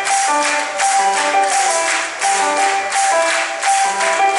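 Live indie rock band playing an instrumental passage: a repeating melody of short keyboard notes over drums, with a steady beat of bright high percussion.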